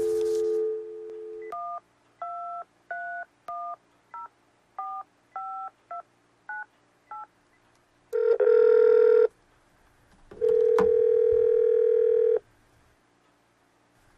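Landline telephone: a steady dial tone, then about ten short touch-tone (DTMF) beeps as a number is dialed, then two long ringing tones on the line as the call goes through.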